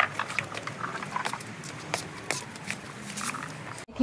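Tomato plants being picked by hand: irregular clicks and snaps of stems breaking, leaves rustling and fruit knocking into a plastic tub, with a few brief squeaky blips. The sound cuts off suddenly just before the end.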